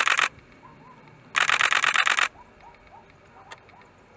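Camera shutter firing in rapid continuous bursts: a burst ending just after the start, then another lasting about a second from about a second and a half in.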